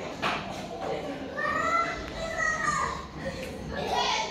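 Indistinct voices, children's among them, chattering in the background, with one high-pitched voice drawn out for about a second and a half near the middle.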